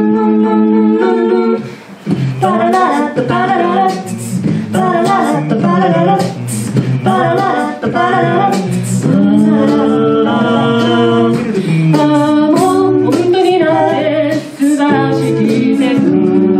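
A cappella group of mixed voices singing in harmony through microphones, over a steady beat of sharp vocal-percussion strikes.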